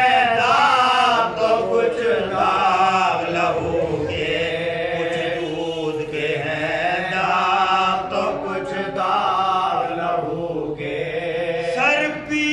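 Men's voices chanting a marsiya, the sung Urdu elegy of Muharram mourning: a lead reciter with a small chorus singing along in long held lines that rise and fall in pitch.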